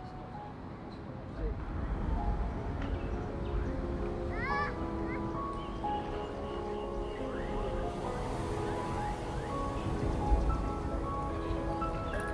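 Slow ambient music of long held tones, growing fuller about a second and a half in.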